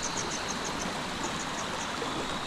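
Small stream running over stones: a steady rush of water, with a high, rapid chirping, about five or six a second, over it.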